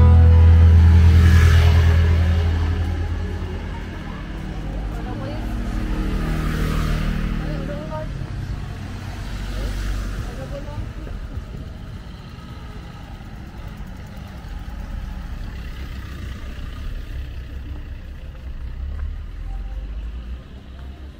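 Street ambience with a motor scooter's engine running close by and fading away over the first few seconds, then passers-by talking.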